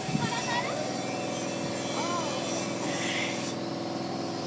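A steady mechanical hum with a few faint, distant voices over it.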